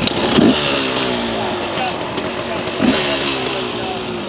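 Dirt bike engines idling, with one throttle blipped twice, about two and a half seconds apart, each rev dropping back slowly in pitch.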